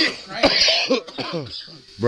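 A man coughing once, sharply, about half a second in, amid laughter and voices.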